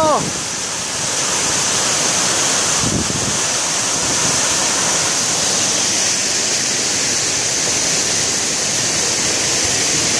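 Roar of the 120-metre Velo de Novia waterfall close to its base: a steady, unbroken rush of falling water.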